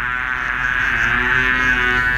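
A man's vocal imitation of a mosquito in flight: one long, steady buzz made with pursed lips.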